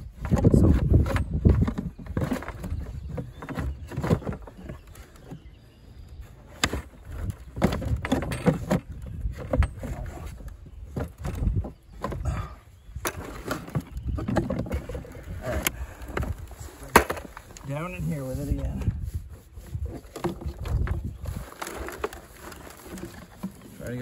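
Irregular knocks, clicks and scraping from hands working in a dirt hole around a metal hydrant pipe, with low rumbling handling noise and a brief muffled voice a little past the middle.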